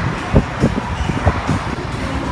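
Steady low background rumble with four short, dull low thumps in the first second and a half.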